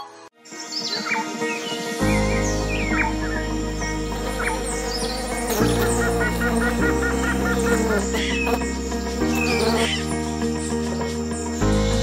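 Birds chirping over background music: the chirps begin just after a brief quiet moment at the start, and calm music with held chords comes in about two seconds in, its chords changing every few seconds.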